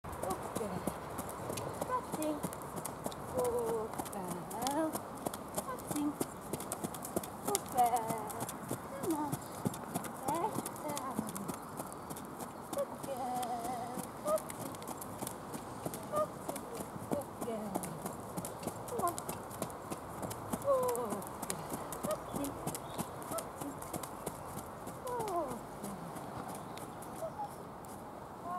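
Hoofbeats of a ridden cob moving around a sand arena, with steady irregular clicking all through.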